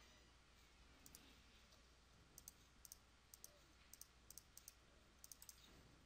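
Faint computer mouse clicks, a dozen or so at irregular intervals, over near-silent room tone.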